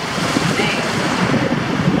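Small surf waves washing in at the shoreline, mixed with steady wind buffeting the microphone.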